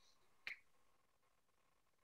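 Near silence in a pause between speech, with one faint short click about half a second in.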